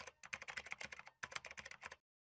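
Computer-keyboard typing sound effect: rapid key clicks in two quick runs, with a short break just after a second in, accompanying on-screen text being typed out.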